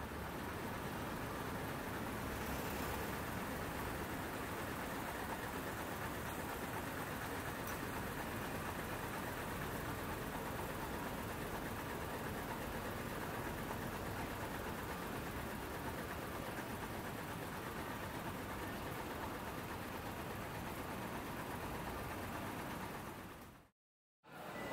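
Steady road-traffic noise of a busy city street: a continuous hum of car and truck traffic with no distinct events, fading out just before the end.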